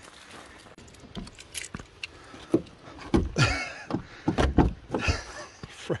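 Footsteps in snow, then several clunks and knocks from about two and a half seconds in as a camper van's door handle, frozen shut, is tugged at.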